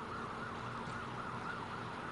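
Emergency vehicle siren with a quickly rising and falling pitch, repeating steadily.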